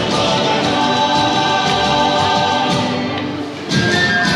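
Chiloé folk music with several voices singing together, loud and steady, with a short lull near the end before the music comes back in.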